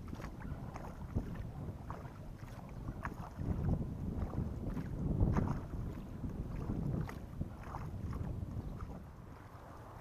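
Kayak paddle strokes in calm river water, swelling about every second or two, with water dripping off the blades, over a low rumble of wind on the microphone.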